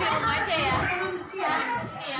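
Young children's voices, talking and calling out while they play.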